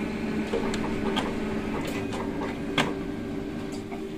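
Canon iR 2318 copier warming up after power-on: a steady mechanical hum broken by several clicks.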